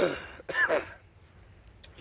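A man clearing his throat after inhaling vapour from a vape pen: a harsh rasp fading out at the start, then a short voiced clear about half a second in.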